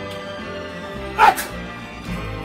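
Background music playing, with a single short dog bark a little over a second in.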